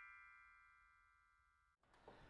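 The ringing tail of a short chiming music sting: several held tones fade away within the first second, then silence.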